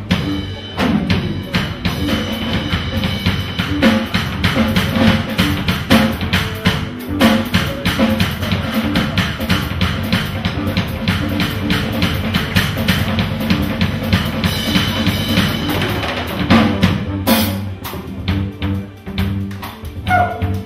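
Live jazz drum kit played busily, a dense run of drum hits with low pitched notes beneath. A loud cymbal crash comes about 17 seconds in, after which the playing is quieter.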